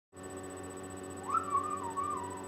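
Amazon parrot whistling: one note that swoops up about a second in, then wavers up and down.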